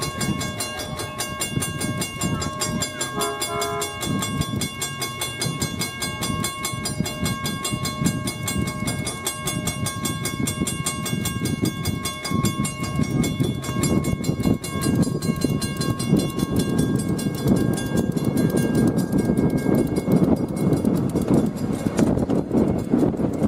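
Miniature train rolling along its track, the wheels rumbling and clattering under the passenger car and growing louder in the second half. A grade-crossing signal bell rings steadily and fades out near the end as the train moves past it, and a short horn toot sounds about three seconds in.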